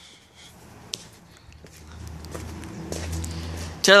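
Quiet camera handling and footsteps, with a click about a second in and a low rumble that builds through the second half.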